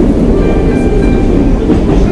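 A Baku metro train running: loud low-pitched noise from the train, with faint steady tones above it that change pitch now and then.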